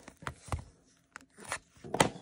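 A few light taps and crinkles from a shrink-wrapped trading card pack being turned over and handled, with a quiet gap in the middle.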